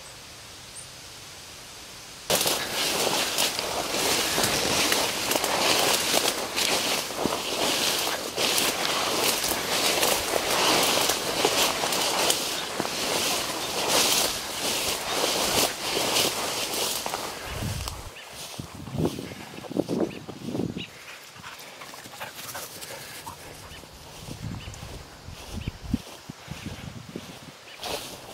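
Leaves, stems and tall grass brushing and crackling against a person pushing through dense undergrowth, with footsteps. It starts suddenly about two seconds in, stays loud and thick with crackles, then thins to quieter footfalls and light rustling in the later part.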